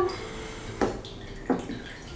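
Liquid from canned mushrooms dripping out of a small metal mesh strainer into a glass bowl, with two sharp taps a little under a second apart in the middle, the strainer knocking against the bowl.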